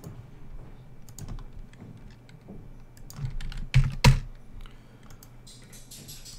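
Computer keyboard typing: scattered keystrokes, with two sharper, louder clicks close together about four seconds in.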